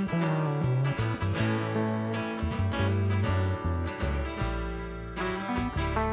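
A small acoustic blues band playing an instrumental passage: strummed acoustic guitar and a Gibson archtop electric guitar over plucked upright bass notes that move every half second or so.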